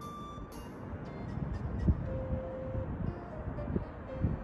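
Outdoor city ambience heard from high up: a steady, noisy rumble of distant traffic with a few low thumps and a couple of brief held tones.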